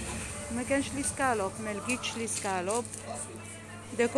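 A voice with long sliding pitch glides, sing-song or sung, over background music, with a steady low hum underneath.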